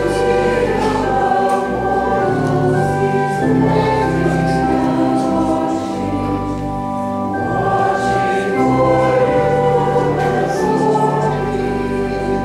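Slow hymn music: sustained chords held for a second or two at a time, with voices singing along.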